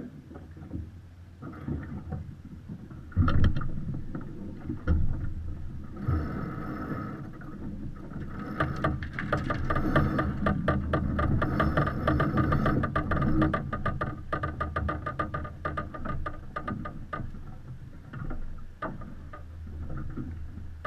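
Crew hauling a line by hand at a sailing yacht's mast: rope rasping through the blocks, with a fast run of clicks from the deck gear through the middle, over a steady rush of wind and water. There is a loud knock about three seconds in.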